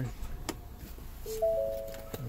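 Push-button start of a 2015 Ford Edge: a click about half a second in and the engine running with a low hum. Near the end, a three-note dashboard chime sounds in overlapping steady tones as the SYNC screen comes on.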